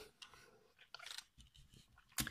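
Near silence with a few faint clicks of the plastic parts of a Hasbro Titans Return Sixshot transforming figure being moved by hand, one short cluster about a second in.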